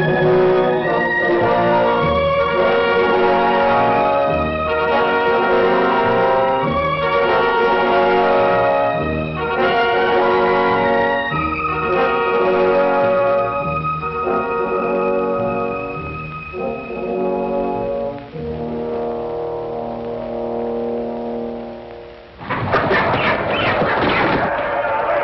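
Orchestral film score led by brass, moving through chords every second or so and then settling into longer held chords. Near the end it gives way abruptly to a loud, dense noise.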